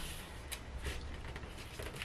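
Faint rustle and crackle of a paper sewing pattern being handled and folded over on a cutting mat, a few soft crinkles over a low room hum.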